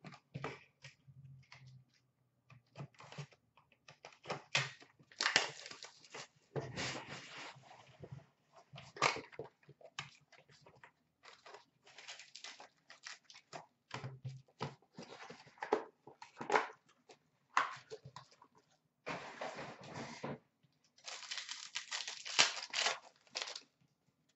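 Upper Deck hockey card packs being handled and torn open by hand, the wrappers crinkling and tearing in short irregular bursts, with longer tears about five seconds in and again near the end.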